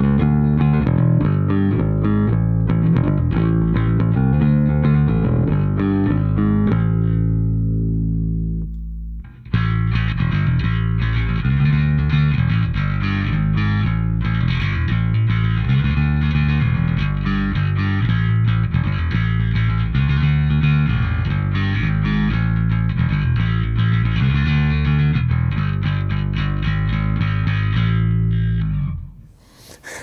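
Fender Precision Bass played through a Tech 21 DP-3X bass pedal. It starts with a riff in the clean bass sound and a note left to ring out, then stops briefly at about nine seconds. After that the mix button is punched in and the playing carries on with the pedal's treble-side distortion, boosted bass and scooped mids, giving a brighter, grittier tone.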